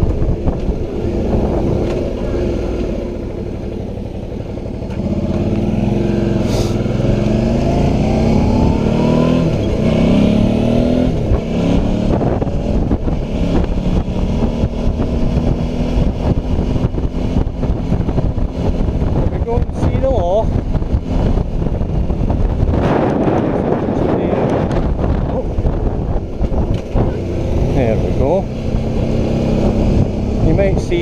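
Suzuki V-Strom motorcycle engine running on the road, its pitch rising as it accelerates a few seconds in. Wind rushes over the helmet-mounted camera's microphone throughout.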